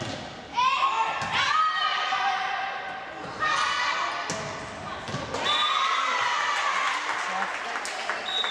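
Volleyball rally in a gymnasium: several sharp smacks of the ball being struck, amid shouting and cheering voices that echo in the hall.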